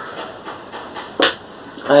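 A single sharp clink about a second in, with a brief high ring: a glass perfume bottle knocking against a shelf as it is put down.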